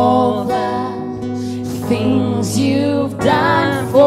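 Worship song: a woman and a man singing long held notes with vibrato over keyboard and acoustic guitar accompaniment.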